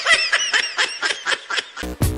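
High-pitched laughter, a rapid run of giggles. Near the end, music with a heavy bass beat cuts in.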